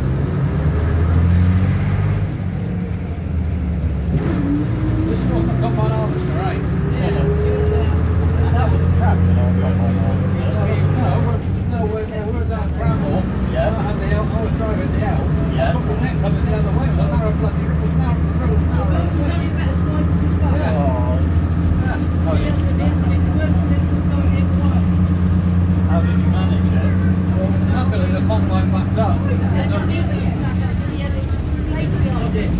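Leyland Panther single-deck bus's engine pulling on the road, heard from inside the saloon, with a whine that rises steadily in pitch over several seconds as the bus gathers speed. The sound dips briefly about twelve seconds in, then runs on evenly.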